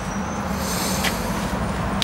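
Wood-fired rocket stove burning with a steady low rumble of draft through its feed tube and heat riser, with a brief hiss and a click about a second in.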